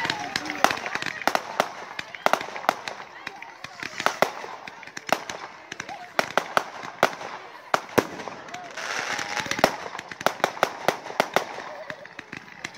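Display fireworks going off: many sharp bangs and pops in quick, uneven succession.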